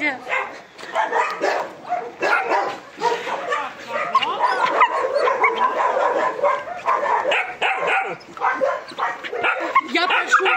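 Several young dogs yapping and whining together, many short overlapping high calls with no break.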